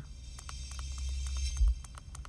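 A movie's opening-logo soundtrack playing through a truck's stereo from a Pioneer AVH-4200NEX head unit, a deep steady sound that swells louder until about one and a half seconds in as the volume is turned up, then drops back. Small clicks come in a quick run throughout.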